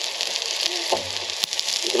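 Sesame-crusted tuna steaks sizzling in hot oil on a portable gas stove's griddle plate, a steady hiss, with one light click about one and a half seconds in.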